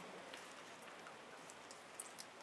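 Near silence: faint room tone through the hall's microphone, with one brief click right at the end.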